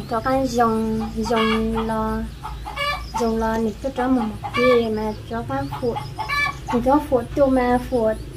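A woman talking continuously in Hmong, her voice often held on level pitches.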